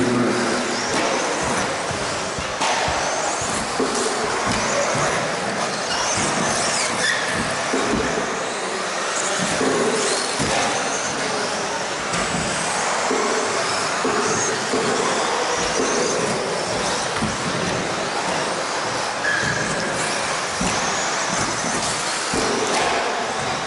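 Several electric 2WD stock-class RC buggies racing on an indoor carpet track, their motors whining and rising and falling in pitch as they accelerate and brake, with tyre and chassis noise echoing around a large hall.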